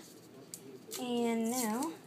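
A person's voice drawing out one long wordless sound, held level and then wavering in pitch near its end, in the second half. Before it there is only faint handling noise.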